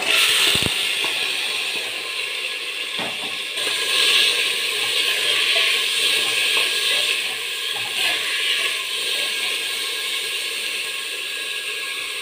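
Split black gram (mati dal) sizzling steadily in hot oil in a pressure cooker as it is poured in and stirred, with a few knocks of the spoon against the pot.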